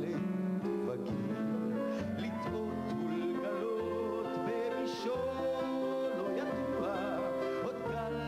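Male vocalist singing a slow Hebrew song live with a band, his voice wavering on held notes over a low bass line and accompaniment.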